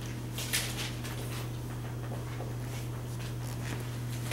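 Dry-erase marker squeaking in short strokes on a whiteboard, the loudest stroke about half a second in, over a steady low hum.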